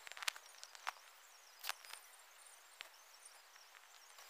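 Faint outdoor quiet with a few scattered soft clicks and faint high peeps.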